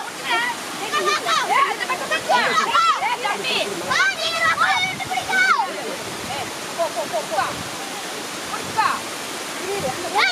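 Water spilling over a small concrete weir into a pool, a steady rush, with excited high-pitched voices shouting over it, busiest in the first five or six seconds and more scattered after.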